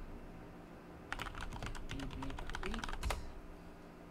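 Computer keyboard keys being typed in a quick run of keystrokes, starting about a second in and stopping about three seconds in, the last key press the loudest.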